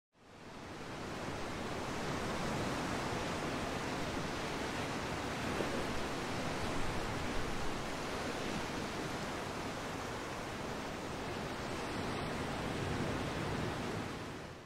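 Steady rushing wash of the sea, fading in over the first second or two and out at the end, with a few slightly louder surges in the middle.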